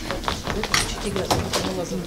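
Shoes of several people knocking and scuffing on a wooden stage floor as they hurry about, a string of irregular short knocks, with faint voices underneath.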